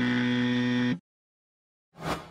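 Electronic buzzer-like sound effect: a steady low buzzing tone lasting about a second that cuts off suddenly, then silence, with a sharp struck sound starting at the very end.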